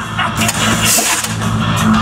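Waffle launcher firing: a burst of hiss about half a second in, over a steady machine hum.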